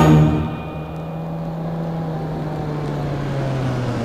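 A car engine running with a steady low hum that sinks slowly in pitch, as the end of a music cue cuts off in the first half-second.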